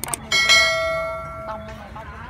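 A quick click and then a bright, bell-like ding that rings out and fades over about a second and a half: the sound effect of an on-screen subscribe-button and notification-bell animation.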